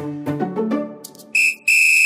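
A high-pitched whistle tone sounds twice, a short blast and then a longer held one, as the music fades out.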